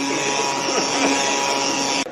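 Electric blender running at a steady speed, puréeing soup; the motor noise cuts off suddenly at the end.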